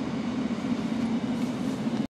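Inside a moving car's cabin: a steady low drone of engine and road noise.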